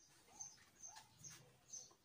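Faint, even ticking of a 1960 Soviet pendulum wall clock, about two ticks a second: the newly wound movement is running.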